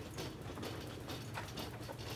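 Irregular clicks, knocks and rattles of a wheeled hospital stretcher being pushed along a corridor, with footsteps, over a steady low hum.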